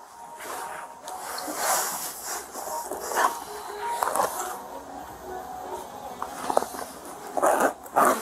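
Plastic bags and small items rustling and crinkling as hands rummage through a drawer, with a few light clicks and knocks.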